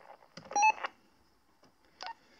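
A short two-step electronic beep from a PMR radio, about half a second in, followed near the end by a brief click.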